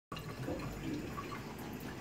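Kitchen tap running a thin stream of water onto cupped hands and into a stainless steel sink, a steady splashing.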